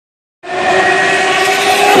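Touring race cars at high revs coming down the straight towards the pit wall: a loud, steady engine note that comes in suddenly about half a second in and shifts near the end as the leading car draws level.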